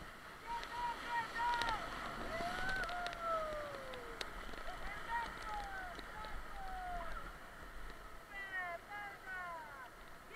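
Whitewater rushing and splashing around an inflatable raft as it runs a rapid, with paddle strokes in the water. Over it, rafters whoop and call out in drawn-out sliding yells, several of them together near the end.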